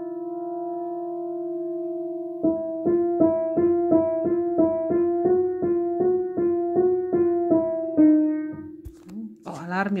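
Piano playing a minor second for an ear-training exercise: one note held for about two seconds, then the two notes a semitone apart alternating quickly, about three strikes a second, before one note is held again near the end.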